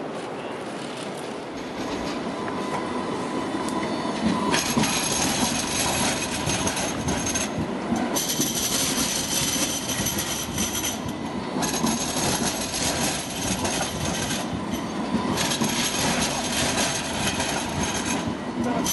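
Alstom Citadis low-floor tram passing close by, its wheels rumbling over the street rails and getting louder a few seconds in. A high steady wheel squeal comes and goes in spells of a few seconds.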